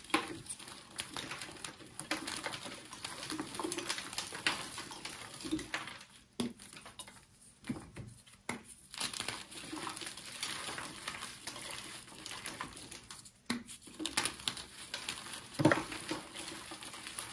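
Hands squeezing and crumbling a soft, powdery block into loose powder: irregular crunching and crackling with a few brief pauses, and a louder thud near the end.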